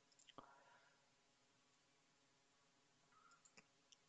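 Near silence: room tone, with a faint click shortly after the start and two faint ticks near the end.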